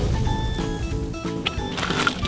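Background music: a tune of short held notes that shift in pitch several times a second.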